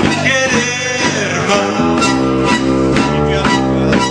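Live acoustic band playing: guitars over a steady beat of about four strokes a second, with a sliding melody line on top.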